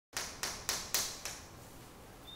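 Chalk tapping against a blackboard five times, about four taps a second, as short strokes are drawn; each tap is sharp and dies away fast.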